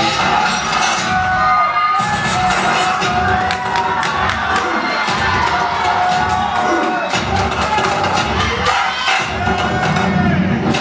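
Loud music with a heavy bass beat playing in a hall, with an audience cheering and shouting over it.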